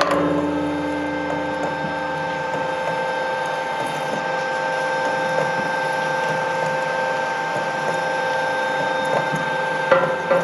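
Twin-shaft shredder running steadily with an even, whining hum from its drive while the cutter shafts turn, an oil filter riding on the cutters without being bitten. A sharp knock comes at the very end.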